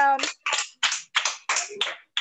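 Hands clapping in a steady rhythm, about three claps a second, after a voice trails off at the start.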